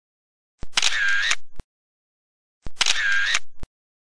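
The same short camera-shutter sound effect played twice, each about a second long, with dead silence before, between and after.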